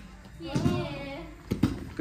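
Children grappling on a foam mat: a child's voice straining for about a second, then two quick sharp slaps about a second and a half in.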